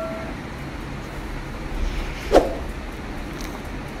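Onions, tomatoes and mint sautéing in oil in an aluminium pressure cooker: a steady low hiss of frying while a slotted metal spoon stirs, with one short, sharper scrape a little past halfway.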